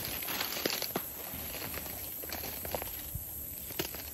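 Rustling and crunching through dry scrub and grass, with a few sharp twig snaps spread through.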